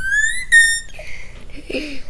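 A child's high-pitched squeal, rising in pitch and then held briefly before it cuts off about a second in. A short low vocal sound follows near the end.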